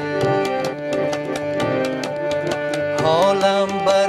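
Harmonium playing a held melody over tabla strokes in a steady rhythm of about four a second. A voice slides in on a gliding note about three seconds in.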